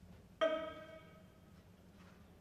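A single pitched note starts suddenly about half a second in, holds one steady pitch and fades away within about a second, over a low steady hum.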